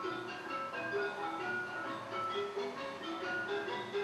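Instrumental music: a tinkling melody of short, steady, bell-like notes moving up and down at an even pace.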